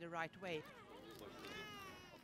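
Faint voices, then a faint high-pitched cry that rises and falls, drawn out over most of the last second.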